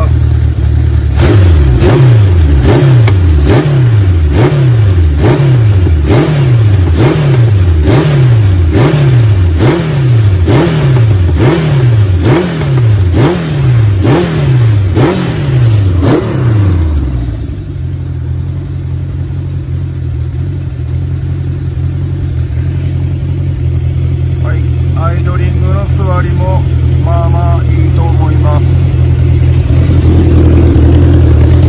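Honda CB750K4's air-cooled inline-four engine blipped about once a second, each rev rising quickly and falling away, some sixteen times, then settling to a steady idle about 17 seconds in.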